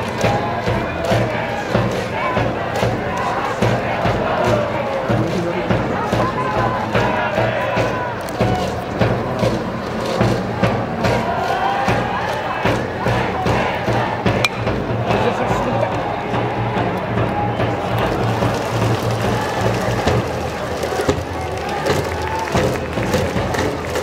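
A cheering section in the stands at a baseball game: band music with a steady beat and a crowd chanting and cheering along. A single sharp crack stands out about fourteen seconds in.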